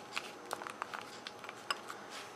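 Scattered light clicks and taps of a Dell Latitude D430 laptop's plastic case and hard-drive parts as they are handled and flipped back down into place. Two sharper clicks come about half a second and about 1.7 seconds in.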